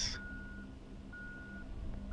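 A vehicle's reversing alarm beeping about once a second, each beep a steady high tone lasting about half a second, over a steady low hum.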